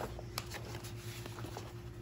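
Quiet handling noise from catcher's shin guards being moved about: light rustling of straps and padding with a few soft clicks, over a faint steady hum.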